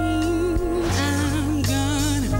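A woman singing live into a microphone with band accompaniment: long held notes with vibrato over sustained chords.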